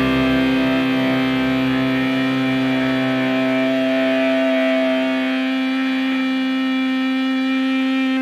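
Rock music: a distorted electric guitar chord held and ringing steadily, the low bass notes dying away about two seconds in.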